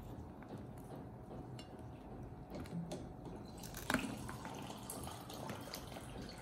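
Fingers pulling apart a boiled king crab's body and shell: wet tearing and picking of the meat, with scattered small clicks and one sharper crack about four seconds in.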